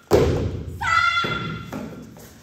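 A child's body slamming down onto a martial-arts mat in a breakfall after being thrown, one heavy thud just after the start. About a second later comes a short, high-pitched shout from a child.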